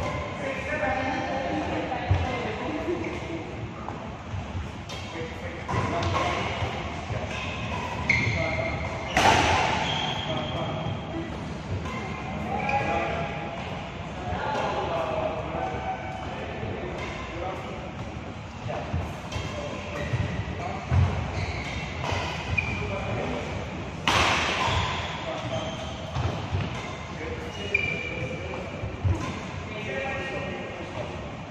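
Badminton drill play: short, sharp impacts of racket strokes on shuttlecocks and thuds of footwork on the court, with two louder hits about 9 and 24 seconds in, over indistinct voices.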